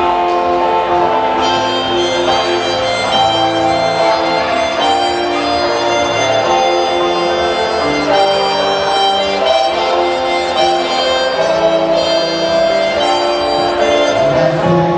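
Hohner harmonica playing a sustained melodic solo over a strummed Epiphone Sheraton II electric guitar.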